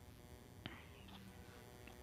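Near silence: faint room tone, with one soft click about two-thirds of a second in.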